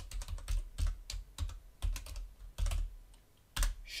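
Typing on a computer keyboard: an uneven run of quick keystrokes, with one louder keystroke near the end.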